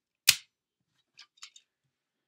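A single sharp plastic click from handling the green Ressha toy train of the DX ToQ-Oh set, followed about a second later by a few faint clicks of plastic parts.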